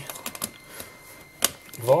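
Light metallic clicks from the tin lid of a coin bank being pried open by hand, with one sharp click about one and a half seconds in.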